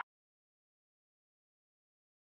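Silence: the sound track has cut off completely, with no sound at all.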